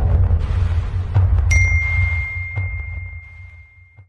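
Subscribe-animation sound effects: a low rumble that fades away, a click about a second in, then a single bell-like ding about a second and a half in that rings on as the rumble dies.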